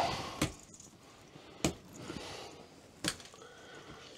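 Heavy curtain fabric rustling as it is handled and pulled, with about four light clicks or knocks spread through.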